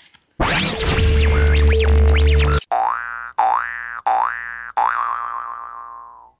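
Edited comedy sound-effect sting: a loud, noisy two-second burst that cuts off suddenly, followed by four cartoon boing sounds, each a quick wobble up and back down in pitch, the last one held and fading out.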